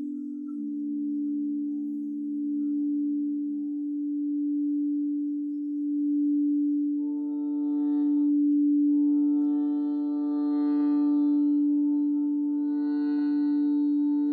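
Frosted quartz crystal singing bowl sustaining one steady low tone, swelling and fading slowly as a mallet is run around its rim. About halfway through, a shruti box drone with reedy overtones comes in underneath and holds to the end.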